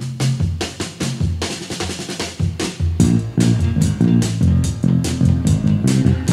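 Northern soul band music: a drum kit leads with little bass for about the first three seconds, then a Music Man Sterling electric bass comes in with a steady, driving line over the full backing track.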